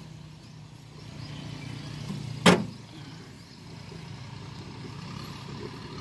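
A single sharp knock on the Kubota tractor's sheet-metal hood about two and a half seconds in, as its hood latch and panel are handled. Under it, a steady low engine hum.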